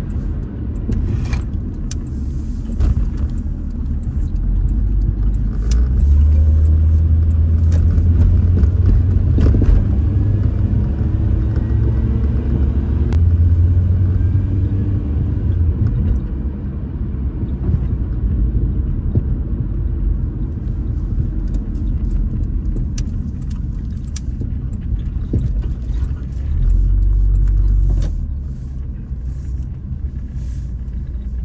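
Car driving, heard from inside the cabin: a steady low rumble of engine and road noise that swells louder for a few seconds at a time, with scattered faint clicks.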